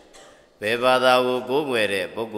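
A man's voice chanting a Buddhist chant, held on long drawn-out notes with a dip in pitch, starting about half a second in after a short pause.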